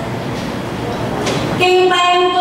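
A steady noisy hiss, then about one and a half seconds in, singing begins on a long held note that carries on to the end.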